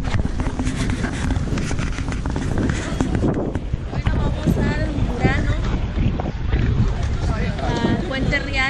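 Wind buffeting the camera microphone in a steady low rumble, with scattered voices of passers-by over it.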